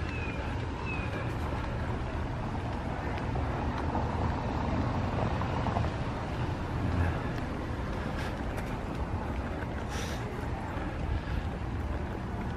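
Steady outdoor background noise: a low rumble with a hiss over it, and two short falling high notes near the start.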